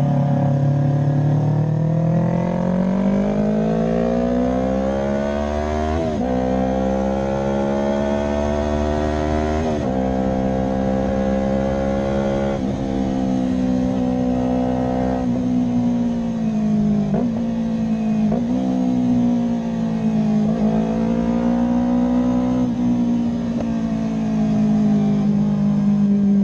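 Yamaha YZF-R3's 321 cc parallel-twin engine running under load, revs climbing over the first few seconds and then held fairly steady, broken by several short dips and quick recoveries in revs as the throttle and gears change.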